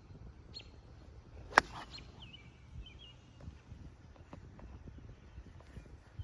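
A single sharp click about one and a half seconds in: an 8-iron striking a golf ball off the tee. Faint bird chirps follow soon after.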